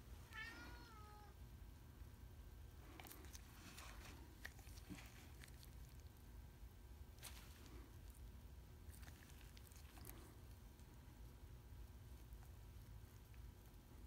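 Near silence, with a faint cat meow about half a second in, a single call falling in pitch. A few faint clicks follow as the steering box's sector shaft is rocked by hand to check for play.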